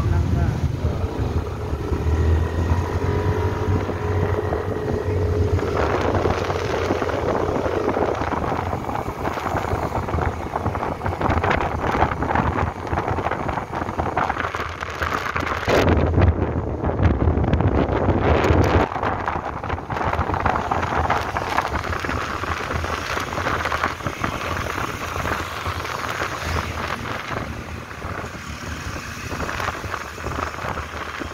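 Riding pillion on a motorcycle taxi through city traffic: the scooter's engine and passing cars under wind rumbling on the microphone, heaviest for a few seconds around the middle.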